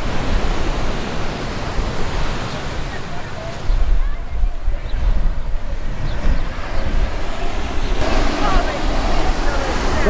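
Ocean surf washing onto a sandy beach, with wind buffeting the microphone; the low wind rumble grows stronger about four seconds in.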